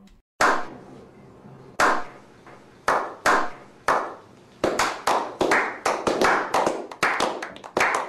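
A slow clap: single hand claps, widely spaced at first, then quicker and steadier from about halfway through, each clap ringing briefly with echo.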